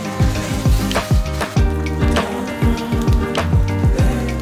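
Background music with a steady beat: regular bass-drum thumps under sustained pitched notes.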